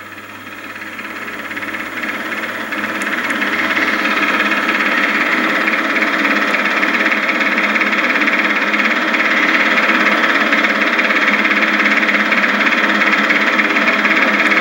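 A steady mechanical whir with hiss, growing louder over the first few seconds and then holding steady.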